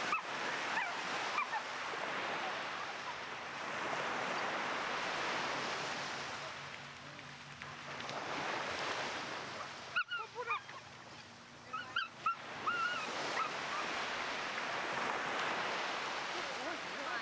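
Small waves breaking and washing up a sandy shore, the surf noise swelling and fading every few seconds. Between about 10 and 13 seconds in comes a cluster of short high calls.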